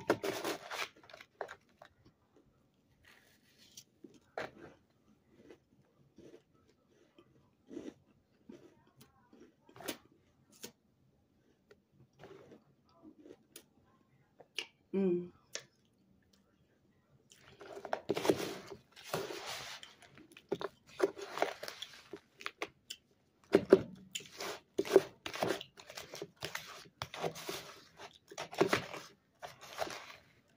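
Close-up chewing and crunching of a mouthful spooned from a plastic tub, with the plastic spoon scraping in the tub: scattered crunches through the first half, a short hummed 'mm' near the middle, then two long bouts of dense crunching in the second half.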